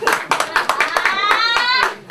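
Spectators clapping in quick, uneven claps, with a high voice shouting and rising in pitch in the second half.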